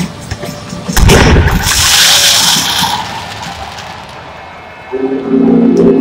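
Pregame stadium fireworks: a loud bang about a second in, followed by a rushing hiss for about two seconds that dies away. Near the end the stadium PA comes in with a sustained voice echoing over the speakers.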